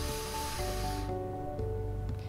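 Soft background music with held chords, over which a breathy hiss of air passes through the mouth and throat during the first second and then stops: an attempted snore that comes out as plain breath with no snoring rattle, the jaw held forward by a positioning gauge.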